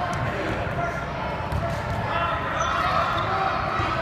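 A basketball bouncing on a hardwood gym floor during a game, with faint voices of players and spectators in the hall behind it.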